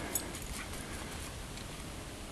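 Quiet, steady outdoor background hiss with a few faint ticks just after the start; no clear bark or whimper.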